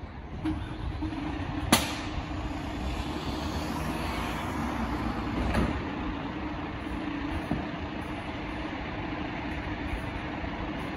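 A Mercedes-Benz fire engine's diesel engine running steadily, with a sharp bang a little under two seconds in and a smaller knock past the middle.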